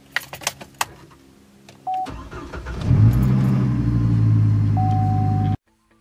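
Keys jangling and clicking in a car's ignition with a short warning chime, then the car's engine cranks and starts about two seconds in, picks up as it catches and settles into a steady idle. The chime sounds again near the end before the sound cuts off abruptly.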